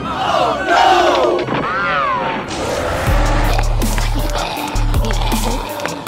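Cartoon character voices crying out with wavering, sliding pitch over background music for the first couple of seconds; about halfway a deep, steady bass line comes in and runs in repeated blocks with a faint beat.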